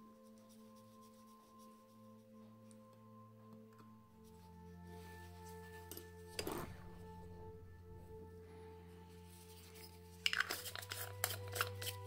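Soft background music of sustained, bell-like chords, changing chord about a third of the way in. A brief rustle about halfway and a cluster of light clicks and taps near the end come from hands and metal tools handling the watch movement on the bench.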